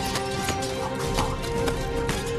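Dramatic film score with sustained held notes, over a fast, irregular clatter of light knocks.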